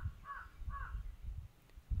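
A bird calling in the background in a short run of brief, evenly spaced calls, about two or three a second, that stops about a second in. Under it is a faint low rumble.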